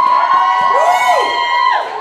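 High vocal sounds made into a handheld microphone: a long high held note with swooping rise-and-fall glides under it midway, the held note dropping away near the end.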